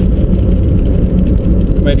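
Steady low rumble of road and engine noise inside the cabin of a moving car, with a man's voice coming back in near the end.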